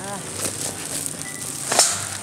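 A plastic sack of produce being handled into a steel wire-mesh gondola cage: rustling handling noises, the loudest a short sharp one near the end.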